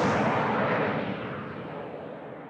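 Closing logo sound effect: a rushing, rumbling noise like a distant explosion that started just before and slowly dies away.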